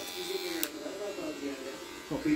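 Electric hair clipper running with a steady buzz.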